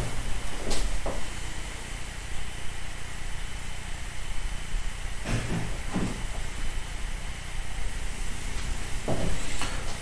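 Scattered faint knocks and handling noises of a laptop's power cord being plugged into a wall socket off-microphone, over a steady low room hum.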